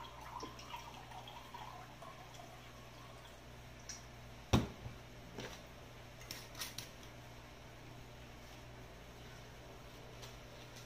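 A chili mixture poured from a glass jar into a glass of cola, faint at the start, followed by a few knocks and clinks of the jar and glassware on the table, the loudest about halfway through. A low steady hum underneath.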